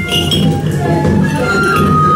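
Hana Matsuri dance music: a bamboo flute holding long notes over dense drumming, with a metallic jingle of small bells in the first half-second.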